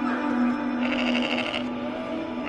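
TV episode soundtrack: a steady low music drone, with a goat bleating briefly about halfway through.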